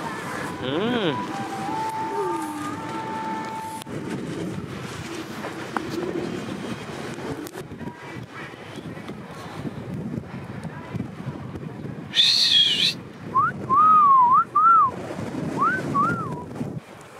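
Wind buffeting the microphone throughout. Over it, someone whistles a few short notes early on and again near the end, with a couple of brief voiced calls.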